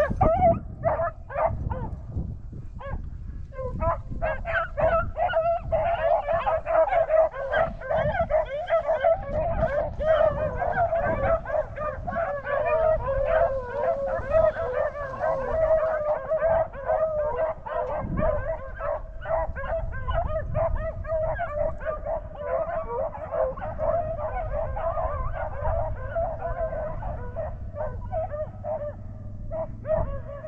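A pack of beagles baying in chorus on a rabbit's track, many voices overlapping without a break, after a short lull about three seconds in.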